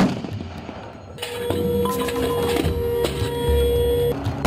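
An M1 Abrams tank's 120 mm main gun firing once: a sharp blast that dies away over about a second. Background music with sustained tones follows.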